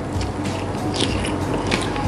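A person slurping instant noodles from chopsticks, in several short, wet slurps.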